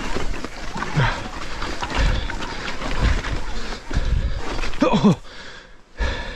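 E-mountain bike tyres crunching and knocking over loose rocks on a steep climb, the rear wheel losing grip, with the rider grunting with effort a couple of times. The noise drops away sharply near the end.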